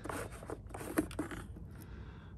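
Plastic fuel tank cap on a pressure washer's small Honda-clone engine being unscrewed by hand: a dry scraping rub with a few light clicks.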